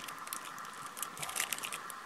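A granola bar's plastic wrapper being torn open and crinkled: a string of short, crisp crackles.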